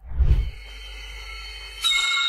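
Horror film score: a low boom opens a quiet, sustained drone. A high ringing chord of several held tones is struck near the end and slowly fades.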